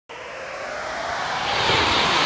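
Rising whoosh sound effect from an animated logo intro: a noisy rush that swells steadily louder.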